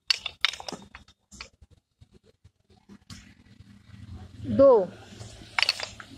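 A group of children knocking pairs of wooden PT dumbbells together on a drill count. A ragged cluster of sharp clacks comes in the first second or so, and a second cluster near the end.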